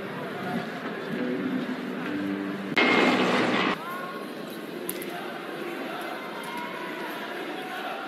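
Indoor arena crowd noise with faint chatter during a break in a volleyball match. Near the middle, a louder noisy burst of about a second starts and stops abruptly, and a little later comes a single sharp knock, like a volleyball bounced on the court floor before a serve.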